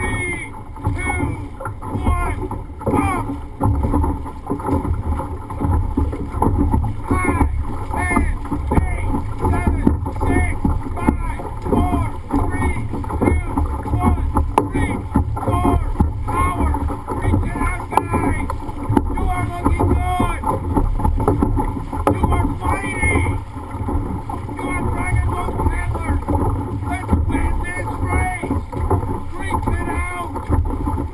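Dragon boat crew paddling at race pace, about 70 strokes a minute, the paddle blades splashing through the water. Voices call out over the strokes throughout.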